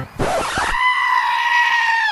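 A long, high-pitched scream: a short rough onset, then one cry held steady for over a second that drops in pitch as it cuts off.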